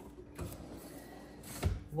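A wooden kitchen drawer being pulled open: a light click about half a second in and a knock shortly before the end as it reaches its stop.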